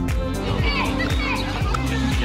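Children's voices calling out and shrieking as they play, over background music with a steady beat.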